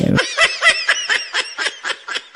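A woman giggling: a rapid run of short, high-pitched laugh bursts, about six a second, gradually fading away.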